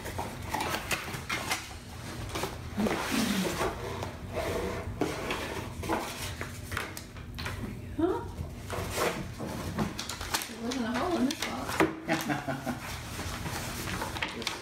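Cardboard mailing box being ripped open by hand, a run of tearing, rustling and knocks as the box and its contents are handled.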